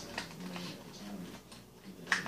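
Light clicks and taps of the Kel-Tec Sub-2000's polymer forend and rail parts being handled and pushed into place on the rifle, over a steady low hum.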